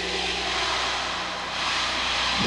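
Live rock concert soundboard audio: a sustained wash of held chord and arena crowd noise over a steady low hum, in the pause after the sung opening chorus and before the full band comes in.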